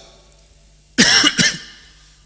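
A man coughs into a handheld microphone: one sudden, loud cough about a second in, breaking in two quick parts.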